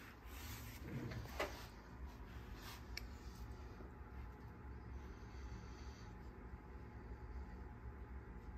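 Faint rubbing handling noise with a few soft clicks in the first three seconds, then only a low steady hum.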